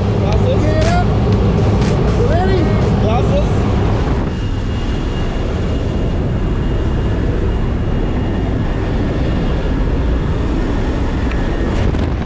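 Loud, steady cabin noise of a small jump plane in flight: the engine running and wind rushing in at the open door. Voices call out over it for the first few seconds.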